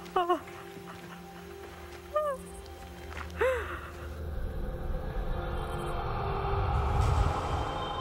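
A woman sobbing: three short, breaking cries in the first half. Under them runs a low music drone that swells steadily louder towards the end.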